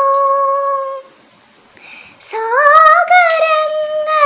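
A young girl singing unaccompanied: she holds a long note, breaks off about a second in for a short pause, then starts a new phrase that climbs up into another held note.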